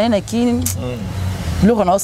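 A woman talking over the low, steady hum of a motor vehicle's engine in the background. The engine is heard most plainly in a pause in her speech about a second in.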